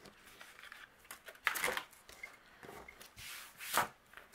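Soft paper handling noises: short rustles and scrapes as the release paper is peeled off an adhesive foam circle and a small paper banner is moved on the desk, with two brief louder rustles about a second and a half in and near the end.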